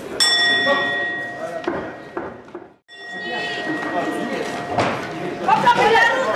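Boxing ring bell struck twice, about three seconds apart, each strike ringing out with several steady tones that fade over a couple of seconds. Voices shout near the end.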